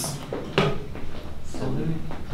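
Chairs and the desk being knocked and shifted as people push themselves up to stand, with one sharp knock about half a second in.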